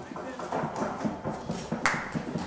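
Audience murmuring and moving about as people get up from their seats, with irregular knocks and shuffling. One sharp clack comes just before the end.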